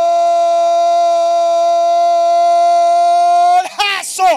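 A radio football commentator's long drawn-out goal cry ("¡Gooool!"), held loud on one steady pitch, breaking off about three and a half seconds in into short shouted calls.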